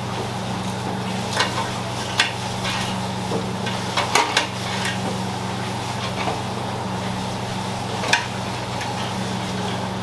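Steel spit skewers clinking a few times against a stainless steel tray and each other as raw whole chickens are pushed onto them by hand, over a steady low machine hum.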